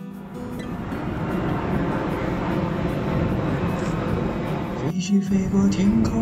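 Jet airliner flying overhead: a broad rushing engine noise that grows steadily louder over several seconds. Music comes in over it near the end.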